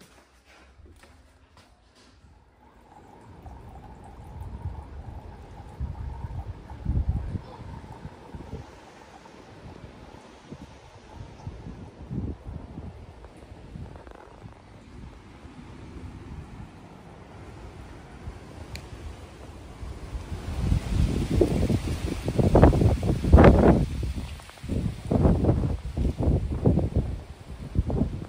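Wind buffeting the phone's microphone in irregular low gusts, growing much stronger in the last third.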